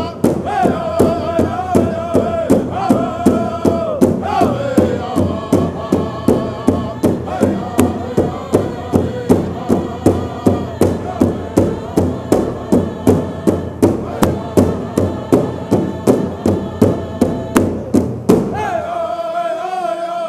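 Pow wow drum group singing a contest song: several voices singing in unison over a large powwow drum struck steadily, about two beats a second. Near the end the drumbeats stop and the singing carries on alone.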